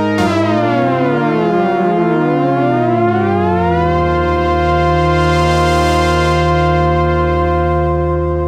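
Five-voice polyphonic chain of Moog analog synthesizers (a Little Phatty driving four Slim Phatty modules) playing a chord whose voices glide up and down past each other. About four seconds in they settle into a sustained held chord.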